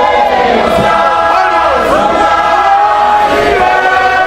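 A group of men singing a Shona hymn together in harmony, several voices holding and gliding between notes, loud and continuous.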